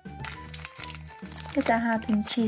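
A crinkly foil blind bag crinkling as it is handled, over background music with a steady beat. A loud voice comes in near the end.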